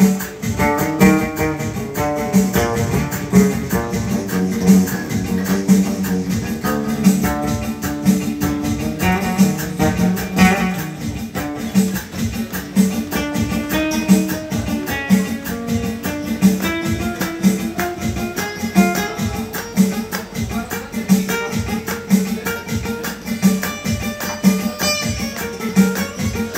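Acoustic guitar strummed in a steady rhythm, with a man singing along.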